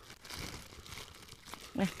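Faint crinkling of plastic protective bags being handled on a guava tree, with a single sharp click about one and a half seconds in.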